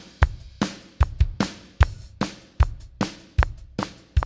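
Multitrack acoustic drum kit recording playing back: kick, snare, hi-hats and ride in a steady beat at 150 bpm, a strong hit about every 0.4 seconds with cymbal wash between. The take has a couple of hits that are a little bit off the beat.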